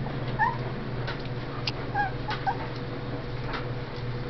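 A few short, high squeaks from a small pet, one about half a second in and a cluster around two seconds in, over a steady low hum with a couple of faint clicks.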